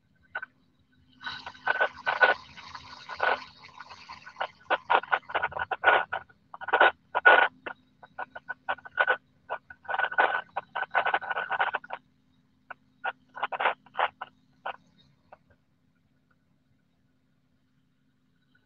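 Broken-up, crackly radio transmission in the microlight pilot's headset audio: a long run of rapid, choppy bursts over a faint steady hum, too garbled to make out words. It cuts out about 15 seconds in.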